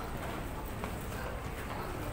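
Busy street noise outside a station: a steady low rumble of traffic and passers-by, with a few scattered light clicks.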